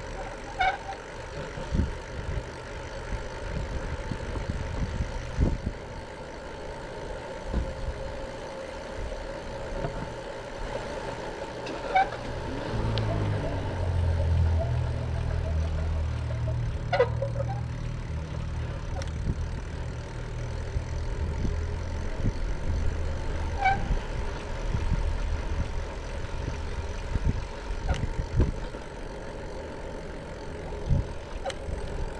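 Steady low rumble of a moving ride along a paved street, growing louder and deeper for several seconds in the middle, with a few short squeaks now and then.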